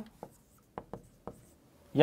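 Marker pen writing a word on a whiteboard: a few short, separate strokes of the felt tip on the board.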